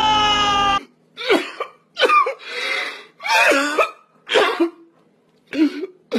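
A man's loud scream, falling in pitch, cuts off abruptly just under a second in. It is followed by a man crying in about five short, choked sobbing bursts with gaps between them.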